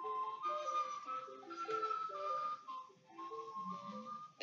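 Instrumental background music: a gentle melody of held notes with a lower line moving beneath it, breaking off briefly a little past the middle.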